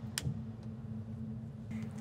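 A single sharp click of a cockpit rocker switch being flipped off to shut down the avionics, followed by a faint steady low hum.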